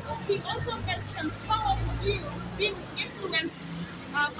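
Indistinct talking among a seated crowd, with a low steady rumble underneath that is strongest in the first half.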